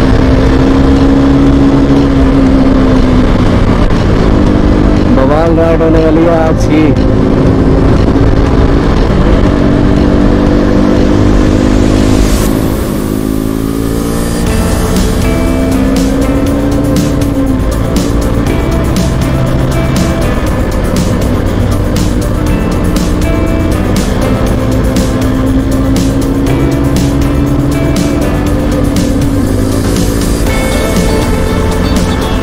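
KTM RC 200 single-cylinder engine running at road speed, with a slowly rising and falling engine note, under background music. The music has a steady beat in the second half.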